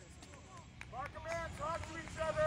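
Faint, distant voices calling out in short, high-pitched shouts, starting about half a second in, over a low outdoor rumble.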